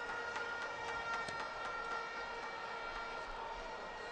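Ballpark crowd background noise with steady sustained tones held over it and a few faint clicks.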